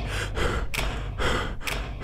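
A quick series of sharp, breathy human gasps, about three a second.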